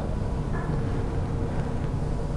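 Steady room tone: a low hum and hiss in a large room, with a faint steady tone over it and no distinct event.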